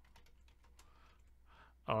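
Faint typing on a computer keyboard: a quick run of light keystrokes.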